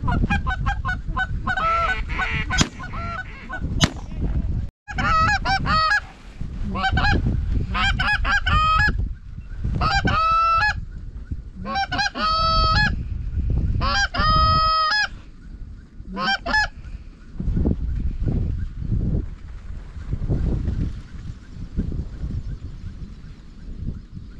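Snow geese calling: clusters of repeated high-pitched honks, thickest between about five and sixteen seconds in, over a low rumble of wind on the microphone. Two sharp clicks sound about three and four seconds in.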